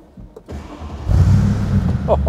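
Mercedes-Benz SLR Stirling Moss's supercharged V8 being started: a few clicks and a short crank about half a second in, then the engine catches about a second in and runs loud.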